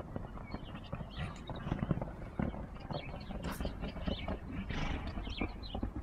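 Horse cantering on a sand arena, its hoofbeats coming as a run of dull, irregular thuds.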